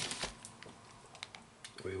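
A few faint, scattered light clicks and crackles of cellophane wrapping and loose trading cards being handled.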